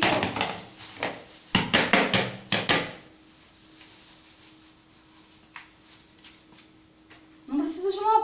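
Thin plastic bag crinkling and rustling as hands work dust out of a vacuum cleaner's filter inside it, busy for about three seconds, then only faint handling.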